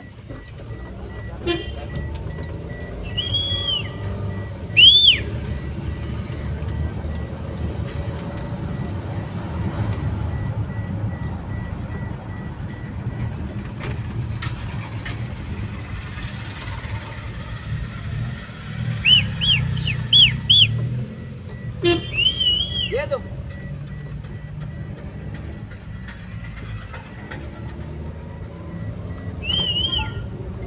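Low road and engine rumble inside a vehicle's cabin on a rough road, broken by short high-pitched toots from the horns of traffic around it: one loud toot about five seconds in, a quick run of four a little past the middle, and a few more later.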